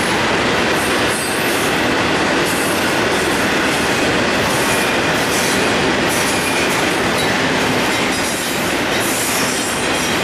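Double-stack intermodal container train rolling past close by: the steady, loud noise of its well cars' wheels on the rail.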